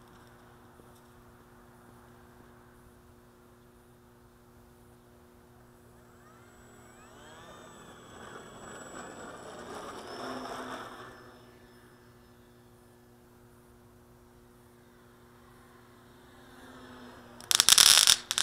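Electric motor and propeller of a Parkzone T-28 radio-controlled model plane taxiing past, growing louder with a rising whine from about six seconds in, loudest around ten seconds, then fading away.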